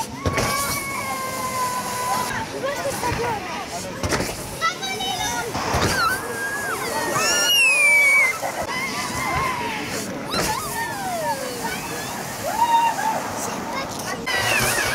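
Children's shouts and squeals over the rushing scrape of an inflatable tube sliding down a plastic-matted tubing slope. A high squeal falling in pitch, about eight seconds in, is the loudest moment.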